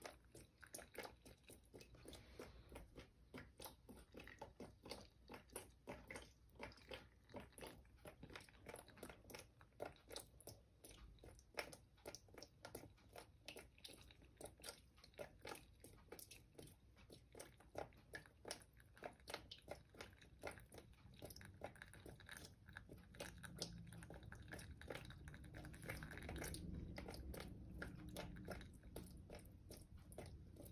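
Faint water dripping and trickling from a cup at the top of a stream table onto wet sand, heard as irregular small ticks two or three a second. A steadier faint hiss builds in the last several seconds.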